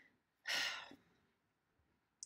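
A woman sighing: one breathy exhale about half a second in, lasting about half a second.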